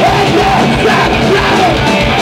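Heavy metal band playing loudly live, with the vocalist yelling over dense, steady band sound.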